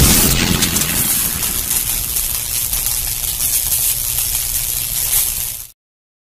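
A loud hissing, rushing sound effect over an animated intro: it starts loud, slowly fades, and cuts off abruptly near the end.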